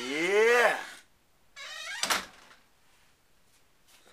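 A man's singing voice holds the last note of a line, its pitch swooping down and back up before it stops about a second in. A short voiced sound and a sharp click follow about two seconds in.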